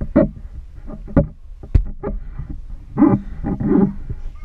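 A toddler making loud short vocal noises in bursts, the longest near the end, with a sharp knock on a cardboard box partway through.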